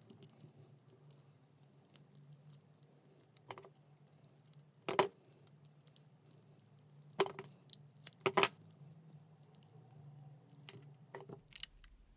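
Hands pressing and folding reinforced tape around a small battery pack of 18650 cells. The handling gives a few sharp clicks and taps, the loudest about five seconds in and two close together around eight seconds, over a faint steady hum.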